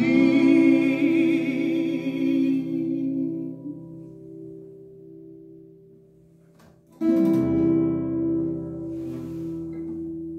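The final held note of the song, sung with vibrato over a strummed steel-string acoustic guitar chord, dies away over about six seconds. About seven seconds in, after a few soft clicks, the guitar strings are struck again and a chord rings out, fading slowly.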